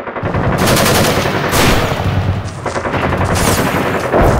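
Sustained automatic gunfire: a long run of rapid, closely spaced shots, loud throughout.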